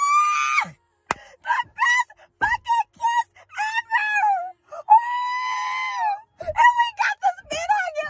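A woman squealing with excitement in high-pitched short cries, with two long held squeals, one at the start and another about five seconds in.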